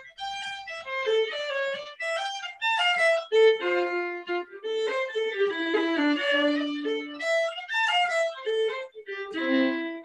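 Solo violin playing a simple fiddle tune in Irish style: a single melody line of quick notes in short phrases, with brief breaks between them.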